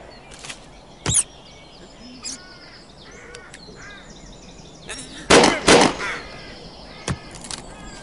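Cartoon pistol shots in a duel: a sharp crack about a second in, then two loud bangs in quick succession past the middle and a smaller crack near the end. Birds chirp and call in the quieter stretch between.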